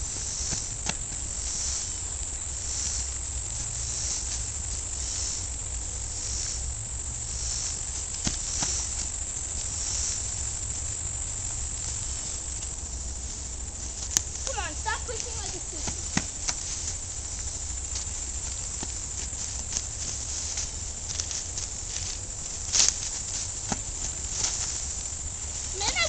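A steady high-pitched chorus of insects in the trees, swelling and fading about once a second in the first few seconds, over a constant low rumble on the microphone. Scattered clicks, and a brief voice about fifteen seconds in.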